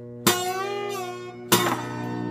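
Stella koa grand concert acoustic guitar in open C tuning played with a Silica Sound glass slide: two picked chords, about a quarter second and a second and a half in, ring over sustained low strings, the pitch wavering under the slide after the first.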